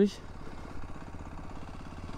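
Aprilia motorcycle engine running steadily at a slow rolling pace, a low, even note with no revving.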